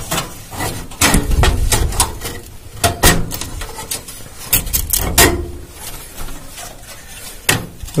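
Irregular clicks, knocks and scraping as a graphics card is worked down into the PCIe slot of a motherboard inside a PC case.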